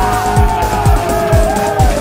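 Background music with a steady kick-drum beat, about two beats a second, under a long held melody line that slides slowly downward.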